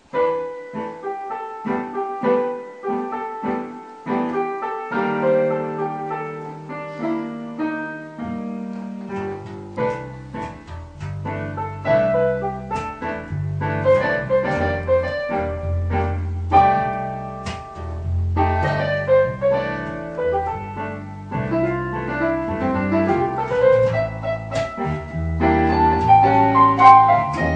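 A digital stage piano playing an instrumental tune, with an electric bass guitar joining on low notes about nine seconds in, the two playing together from then on.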